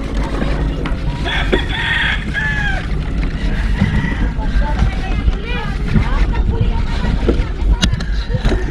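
Wind rumbling on a bike-mounted action camera's microphone and tyres rolling over a gravel road, with people's voices and a rooster crowing.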